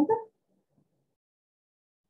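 A voice finishing a spoken question with a rising tone, cut off about a third of a second in, then near silence.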